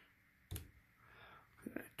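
A single short click of a key pressed on a TI-84 Plus graphing calculator, about half a second in, against otherwise near silence.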